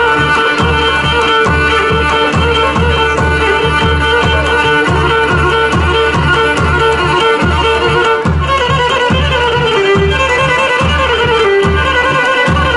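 Pontic lyra (kemenche) playing a lively dance tune over the steady beat of a daouli drum, about three low strokes a second.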